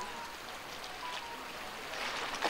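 Steady hiss of sea surf washing against a rocky shore, heard as an even outdoor background.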